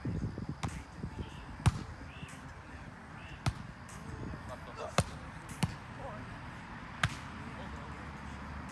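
Volleyball being struck in a rally: sharp slaps of hands and forearms on the ball, six in all, irregularly spaced.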